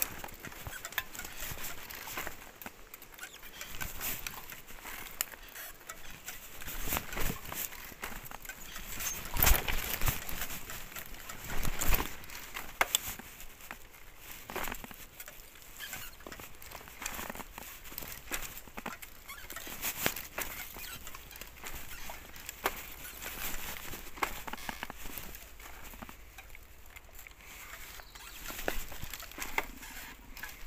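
ICE recumbent trike rolling down a steep rocky dirt trail: tyres crunching over stones and leaf litter, with irregular knocks and rattles from the frame, the loudest jolts about ten and twelve seconds in.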